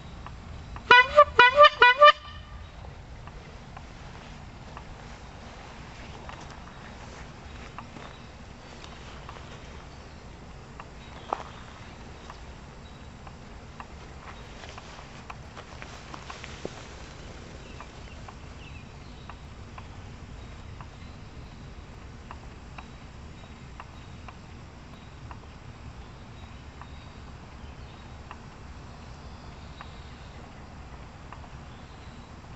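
Chrome rubber-bulb squeeze horn squeezed by hand, giving about five quick honks in a row, each rising slightly in pitch, about a second in. Afterwards only faint outdoor background remains, with one sharp click about eleven seconds in.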